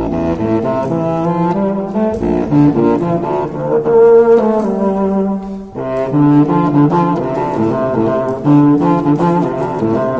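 Unaccompanied contrabassoon playing a funk-style dance movement: a run of short, detached notes, a brief break a little past halfway, then a repeating riff.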